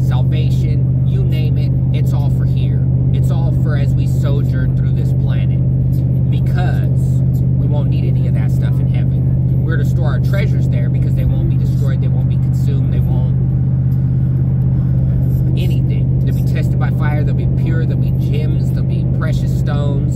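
Steady low drone of road and engine noise inside a moving vehicle's cabin, under a man talking.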